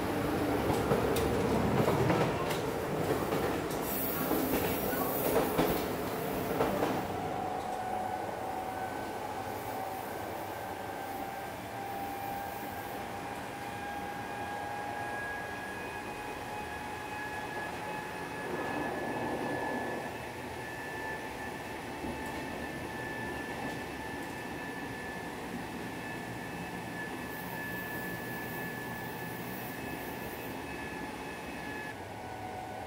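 Kintetsu Blue Symphony limited express running, heard from inside the lounge car. For the first several seconds there is a louder rumble and clatter of wheels on the track. After that the run settles into a steady noise with a faint whine that slowly rises in pitch.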